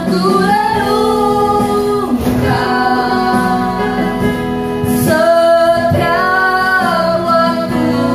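A woman singing a slow worship song over electric keyboard accompaniment, holding long sustained notes with a short break about two seconds in.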